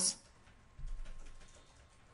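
A brief run of faint clicks about a second in, from working a computer's keyboard and mouse.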